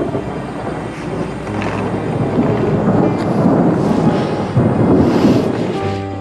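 A loud rushing, rumbling noise that builds and peaks about five seconds in.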